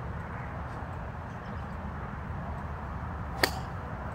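A golf club striking the ball: one sharp, short click about three and a half seconds in, over steady low background noise.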